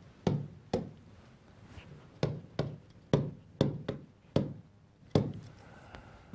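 Pen-style stylus tapping against the glass of a large touchscreen display as numbers are written on it: about nine sharp knocks, irregularly spaced, each with a short ring.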